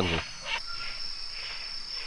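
Night insects in tropical rainforest singing: a steady, high-pitched chorus, with one continuous high trill setting in about half a second in.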